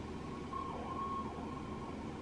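Steady room noise, a low hum and hiss with a faint, even high whine. It gets a little louder for about a second near the middle.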